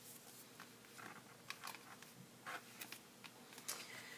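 Near silence: room tone with a few faint, scattered handling ticks and rustles.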